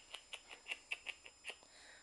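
Dog licking: a faint, regular run of small wet clicks, about five a second, that stops about a second and a half in.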